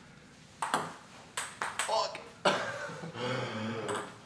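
Table tennis rally: the ball clicks sharply off paddles and the table several times in the first half.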